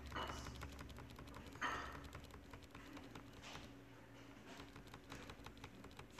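Faint, irregular clicking of computer keyboard keys being typed, with a few slightly louder clicks or taps.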